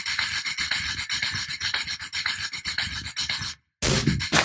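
A dense, scratchy crackling noise effect in a video's title sequence. It cuts off suddenly just before the end, and loud music with a beat starts right after.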